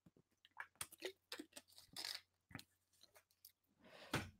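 Near silence with a few faint, scattered clicks and crackles.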